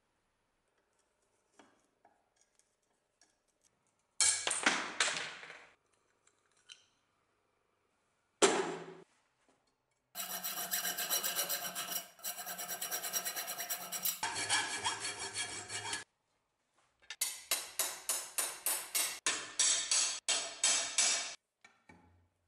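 Rusty steel cleaver blade scrubbed by hand with a wire brush in quick back-and-forth strokes, about three a second. The work comes in several runs that start and stop abruptly, after a few short scrapes in the first half.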